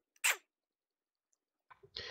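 A pause between spoken words: mostly near silence, with one short click about a quarter second in and a soft breathy noise near the end.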